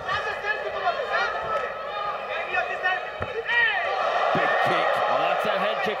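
Arena crowd shouting and cheering during a stand-up exchange of an MMA fight, many voices overlapping, with a man's voice calling out over it in the last second and a half.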